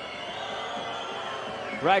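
Arena crowd background during a free throw, a steady murmur with a faint sustained high tone, followed near the end by a commentator's voice.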